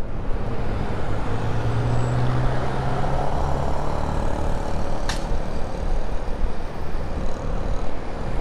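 Honda motorcycle running under way in city traffic, its engine hum mixed with wind and road noise on the camera microphone. A steady low engine note stands out for the first few seconds, and there is one short sharp click about five seconds in.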